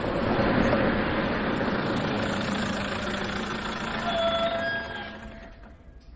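Car driving close past, a steady rush of engine and tyre noise that swells and then fades out about five seconds in.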